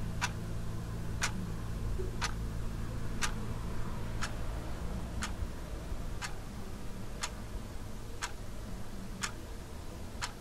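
A clock ticking steadily, one sharp tick a second, over a low steady hum.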